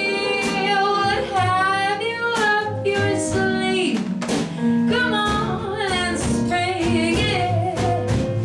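Live jazz: a female vocalist scat singing in quick wordless syllables over piano, bass and drums keeping a steady swing beat.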